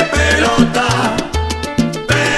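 Instrumental salsa passage without vocals: a bass line on repeated low notes under steady percussion hits and layered band instruments.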